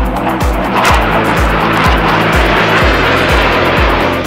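Jet aircraft passing overhead: a loud rushing jet-engine noise rises to a peak about a second in, then fades away. It is mixed over dance music with a steady beat.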